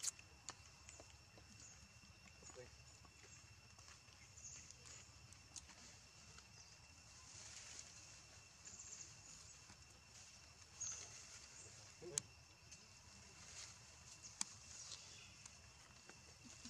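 Near silence: faint forest ambience with a steady high insect drone, a few brief chirps and scattered small clicks.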